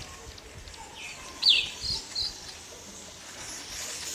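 A bird calling: one loud, short, falling chirp about a second and a half in, then two brief high notes, over faint outdoor background noise.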